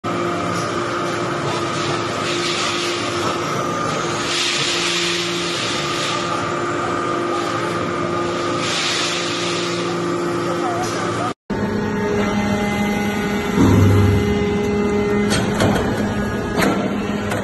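Hydraulic metal-chip briquetting press running: a steady hum from its hydraulic power unit, with swells of hissing every few seconds. The sound breaks off briefly about eleven seconds in and resumes with a different hum, with a louder low thud near fourteen seconds.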